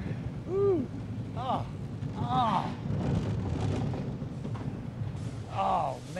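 Steel roller coaster train running along its track with a steady low rumble, and riders letting out short whoops and laughter over it.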